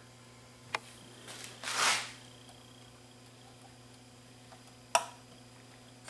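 Quiet handling sounds from cleaning a DAT tape transport's capstan shaft by hand: a small click about a second in, a brief soft rush of noise near two seconds, and another click near five seconds, over a low steady hum.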